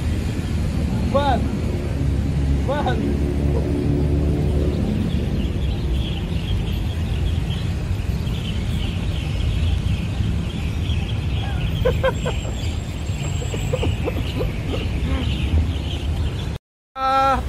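Steady low outdoor rumble with a few short rising-and-falling calls about a second apart near the start, a faint high chirping through the middle, and a cluster of short calls near the end.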